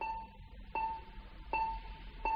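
Bedside patient heart monitor beeping: a single high beep about every three-quarters of a second, three times, keeping time with the patient's heartbeat.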